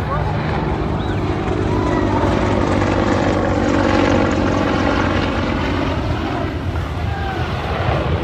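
Engine noise of a departing aircraft climbing away overhead, swelling to its loudest about four seconds in and then easing off, with scattered voices from the crowd.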